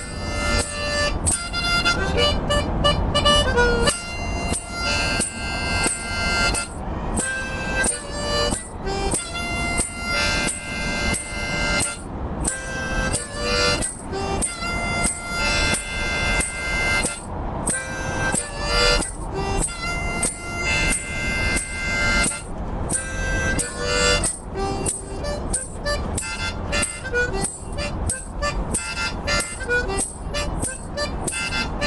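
Harmonica played solo in short, rhythmic phrases of chords and single notes, broken by brief breath gaps, over a steady low background rumble.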